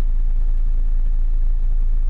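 BMW 520d's four-cylinder diesel engine idling steadily, heard as a low rumble inside the car's cabin.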